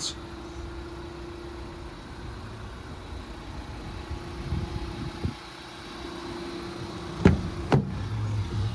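A steady low hum over outdoor background noise, then two sharp clicks about half a second apart near the end as the van's driver's door is unlatched and opened.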